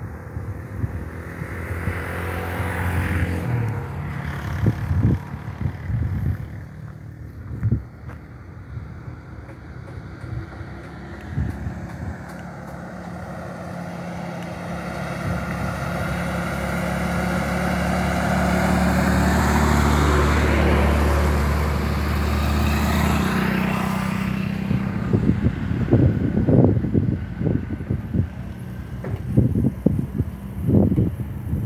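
A bus drives past on the road. Its engine grows louder to a peak about twenty seconds in, then falls away. Irregular wind buffeting on the microphone follows near the end.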